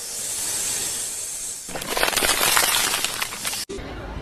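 Edited-in meme sound effects: a steady high hiss, then from a little under two seconds in a louder, crackling noise that cuts off abruptly shortly before the end.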